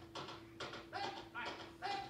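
A squad of soldiers marching in step, boots striking the ground in a regular beat, with short barked drill calls over a steady background hum.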